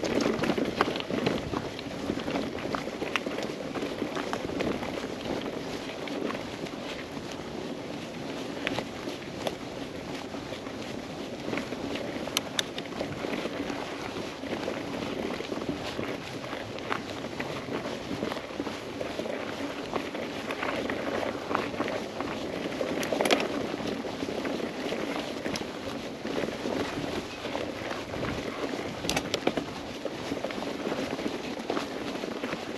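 Mountain bike being pedalled along a dirt singletrack: a steady rumble of tyres rolling over dirt with frequent clicks and rattles from the bike, and a sharper knock about 23 seconds in.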